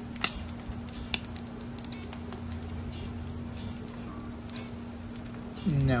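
An egg frying in oil on a cast iron griddle: a soft sizzle with scattered small pops over a steady low hum, and a couple of sharp clicks in the first second or so.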